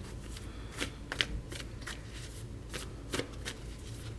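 A deck of tarot cards being shuffled by hand: an irregular run of short card slaps and flicks.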